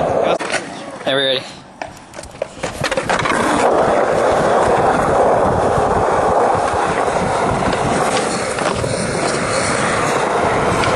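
Skateboard wheels rolling on smooth concrete, a steady rumble that starts about three seconds in and carries on. Before it come a few knocks, and a short wavering pitched sound about a second in.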